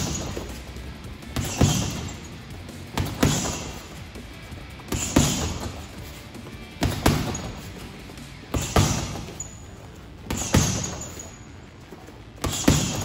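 Boxing-gloved jab-cross punches landing on a heavy bag: six pairs of thuds about every two seconds, the second punch of each pair (the cross) louder than the first, over background music.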